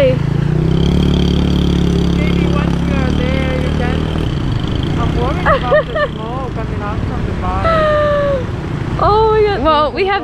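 Small motorbike engine running steadily as the bike rides through a shallow river ford, water splashing around it. The engine fades out about four seconds in, and voices call out after that.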